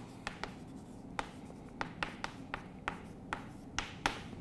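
Chalk writing on a chalkboard: a string of short, sharp, irregular taps and scrapes as letters are formed.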